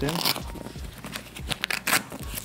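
A camera bag's padded insert lid being pulled open: several short rustling, ripping bursts of fabric, the loudest near the end.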